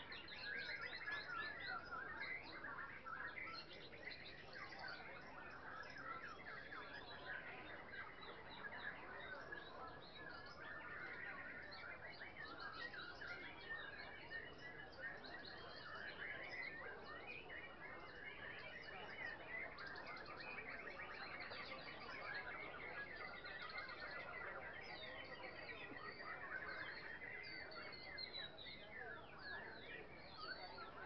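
Many caged songbirds singing at once in a contest: a dense, continuous tangle of overlapping chirps and trills.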